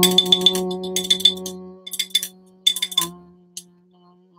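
A man's voice holds one low, steady vocal note that slowly fades away. Over it, a small jingling rattle is shaken in short bursts about once a second.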